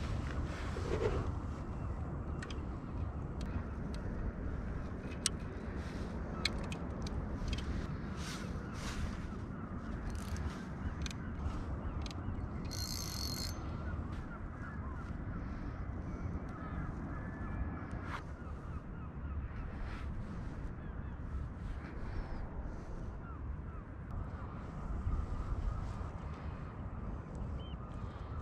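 Small clicks and rustles of fishing tackle being handled as a two-hook flapper rig is baited with squid strip, over a steady low rumble of wind and water.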